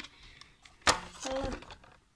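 A single sharp knock about a second in, from a plastic remote-control toy car being handled and turned onto its side.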